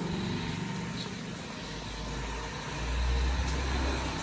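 A low rumble under a faint steady hum, the rumble swelling about three seconds in.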